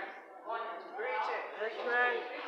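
Speech only: a man preaching into a handheld microphone.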